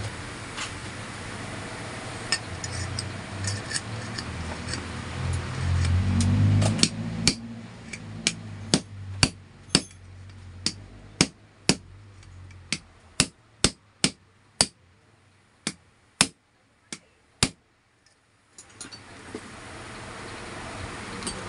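Metal pipe driven down over a ceiling fan motor shaft to seat a ball bearing onto the shaft and stator: about twenty sharp metallic knocks, roughly one or two a second, starting about a third of the way in and stopping a couple of seconds before the end. Before the knocks there is a low hum with a few small clinks.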